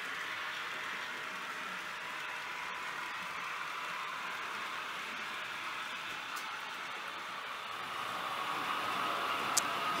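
Model trains running on a layout: a steady whirring hiss of small electric motors and wheels on track, growing a little louder near the end.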